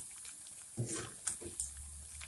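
Hot oil sizzling in a wok as strips of young jackfruit deep-fry, with a slotted metal spoon stirring and scooping through the oil in a few louder rough bursts.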